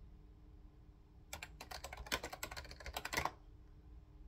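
Typing on a computer keyboard: a quick run of keystrokes lasting about two seconds, starting about a second in.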